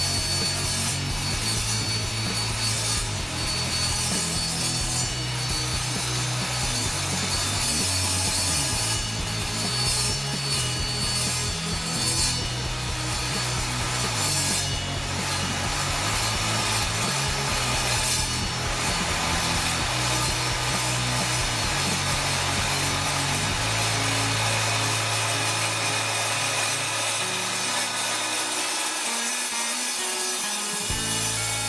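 Evolution R210 mitre saw's 1200 W motor and 210 mm multi-material blade cutting slowly through 5.3 mm thick steel flat bar. The blade makes a steady grinding rasp in the metal throughout, with the motor held under load.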